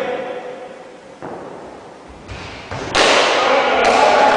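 Thuds and knocks from play in an indoor cricket game, echoing in a sports hall, then a sudden loud burst of players shouting about three seconds in.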